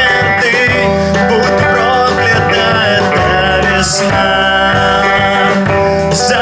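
Live rock band playing a song: electric guitars, bass and drum kit, with a male singer's voice in places.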